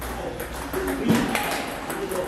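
Table tennis ball being hit back and forth in a rally: several sharp taps of the ball off the paddles and the table, the loudest about a second in.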